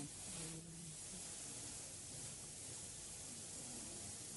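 Faint, steady hiss of background noise with no clear events. A faint voice murmurs briefly in the first second.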